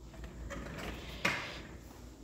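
Faint handling noise with a single sharp knock a little over a second in.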